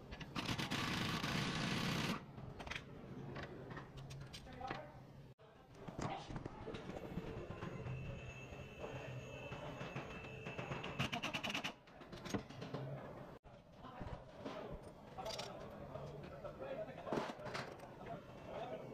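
Cordless impact wrench hammering a sway-bar end-link nut: a loud burst of about two seconds at the start, then a longer rattling run in the middle, with clinks of hand tools on metal between.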